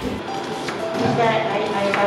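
Background music with people talking indistinctly.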